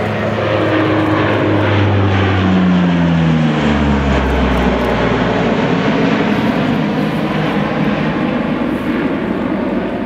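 Four-engine turboprop aircraft passing low overhead. Its loud propeller-and-engine drone drops in pitch as it goes by, then runs on and eases off a little near the end as it climbs away.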